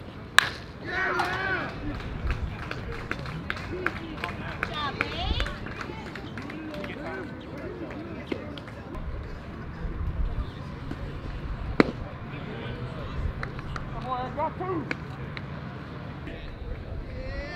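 Sharp crack of a bat hitting a pitched baseball, followed at once by players and spectators shouting and cheering. Scattered voices carry on, and a second sharp crack comes near the end.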